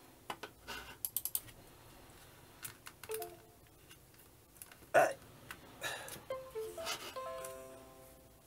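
Mouse clicks on a Windows 10 laptop, a quick run of them about a second in and a loud single click about five seconds in. These are mixed with short falling electronic chimes from the laptop's speakers, about three seconds in and again near the end. The chimes are Windows system sounds as a plugged-in USB flash drive is detected.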